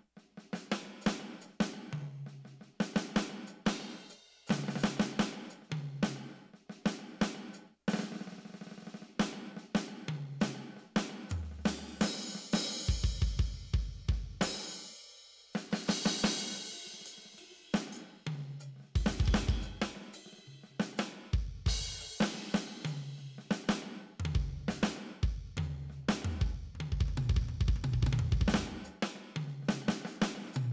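Simmons SD1250 electronic drum kit played freely on its 'gated drum' kit (drum kit five): a groove and fills of kick, snare, toms and hi-hat, with cymbal crashes around the middle.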